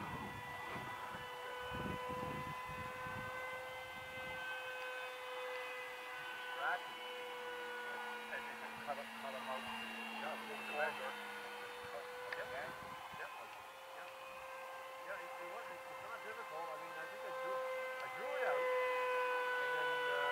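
Electric RC model plane's brushless motor and propeller whining overhead in flight. The pitch holds fairly steady, rising and falling slightly as the throttle changes.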